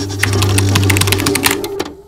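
3D printer sound effect: a steady low motor hum under a fast run of mechanical clicks, like stepper motors driving a print head. It cuts off abruptly near the end.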